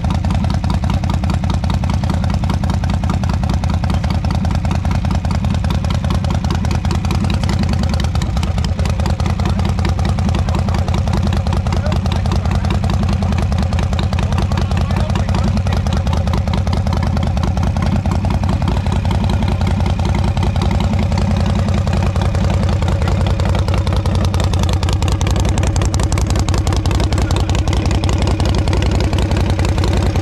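A V-twin motorcycle engine idling steadily, its exhaust pulses even and unbroken throughout.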